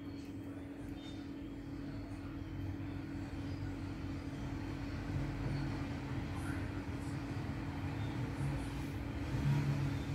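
A steady low hum under a deeper rumble that grows louder near the end.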